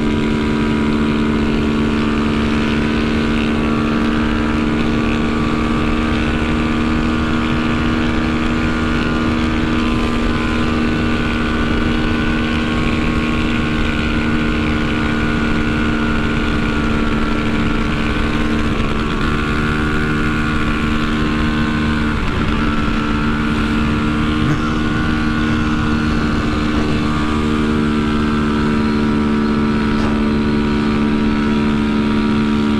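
Honda CB300F Twister's single-cylinder engine held at high revs in sixth gear at about 160 km/h, a steady drone with wind rush over the microphone.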